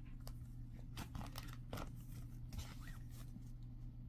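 Faint handling of a clear plastic Blu-ray case and a paper booklet being lifted out of it: scattered light clicks and rustles over a steady low hum.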